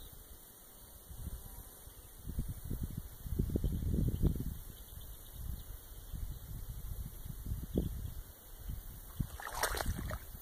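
Footsteps wading through shallow water among marsh grass: low sloshing and splashing in uneven bursts, loudest about three to four seconds in, with a brief sharper noise near the end.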